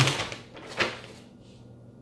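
Paper rustling as a folded pamphlet is flipped open and handled, with a short, sharp crinkle just under a second in.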